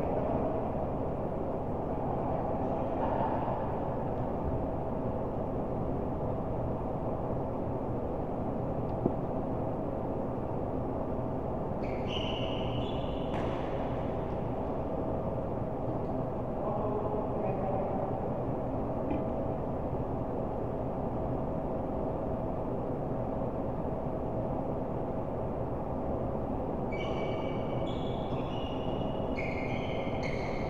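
Steady rumbling room noise of an indoor badminton hall during play. Court shoes squeak on the mat in short clusters midway and again near the end, with one sharp knock about nine seconds in.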